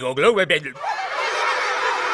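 A man's brief voiced sound, then a roomful of children laughing together, starting about a second in and going on steadily.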